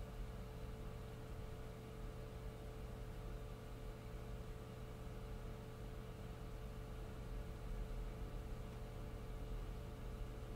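Steady low electrical hum with a faint constant tone over quiet room noise, with no distinct handling sounds.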